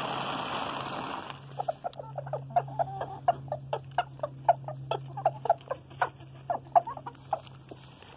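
Popcorn rustling out of a plastic bag for about the first second and a half, then chickens giving many short, quick clucks as they peck at the scattered popcorn, several notes a second.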